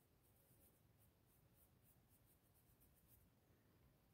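Near silence, with faint, light, repeated brushing strokes of a soft makeup brush dabbing blush onto a crocheted yarn doll's cheek.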